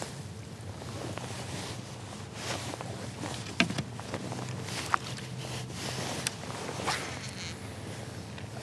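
Kayak paddle stroking through the water, over a steady wash of water and wind noise, with a few short sharp clicks through the middle.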